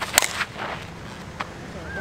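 Two-piece composite slowpitch softball bat (Miken Freak 23KP) hitting a pitched 52/300 softball: one sharp, loud crack a fraction of a second in. A fainter click follows about a second later.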